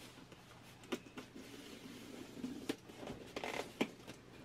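Ballpoint pen tip scratching and poking through packing tape on a cardboard box, with a few short scrapes and snaps that come closer together near the end.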